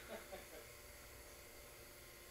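Near silence: room tone, with a few faint soft sounds in the first half second.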